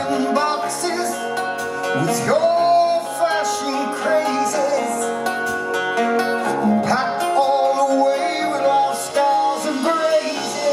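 Live rock band playing: a man's voice sings held, gliding notes over electric guitar and drums, loud and continuous.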